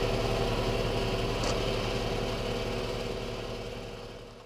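A motor running with a steady, even hum, fading out near the end.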